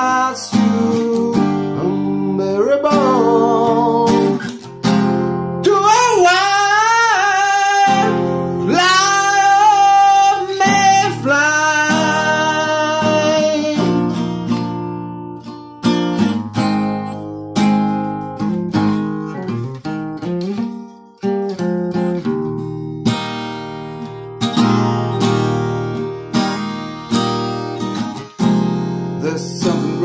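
Acoustic guitar strummed while a man sings long, sliding vocal lines. From about halfway through, the guitar plays on alone with steady strums.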